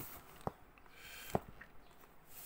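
Two light clicks, about a second apart, from hands gripping and handling a small die-cast metal and plastic robot figure.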